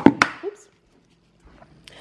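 Two sharp knocks in quick succession at the very start, as a jar of almond butter is picked up off a countertop, followed by near silence.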